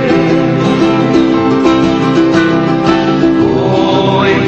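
Music from a Tongan upe (lullaby) song: plucked guitar with held, sustained notes that step from pitch to pitch.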